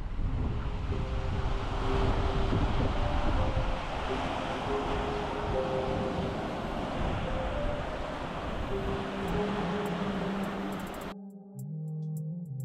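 Surf washing onto a sandy beach with wind rumbling on the microphone, under soft background music. The surf and wind cut off suddenly near the end, leaving the music alone.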